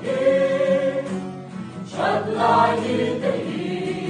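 Mixed choir of men and women singing a gospel song in Mizo in several parts, with an acoustic guitar accompanying. A long held chord fills the first half; a new phrase begins about halfway through.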